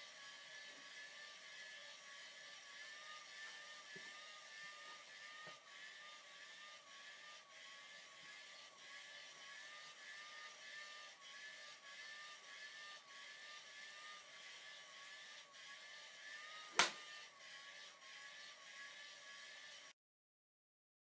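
Faint, steady mechanical whir with a slowly wavering tone, and a single sharp click near the end.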